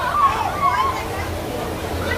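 Indistinct voices and chatter that fade about a second in, over a steady low hum.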